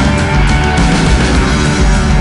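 Loud, heavy psychedelic blues-rock played by a power trio: electric guitar, bass and drums, running on without a break.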